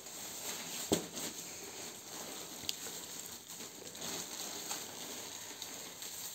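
Faint rustling of plastic packaging film being handled, with a single sharp click about a second in.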